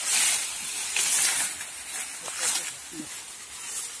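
Dry sugarcane leaves and stalks rustling in repeated surges, about one a second, as the cane is pulled together by hand and bound.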